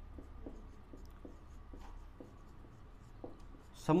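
Marker pen writing on a whiteboard: a string of short, irregular strokes and taps, over a faint steady low hum.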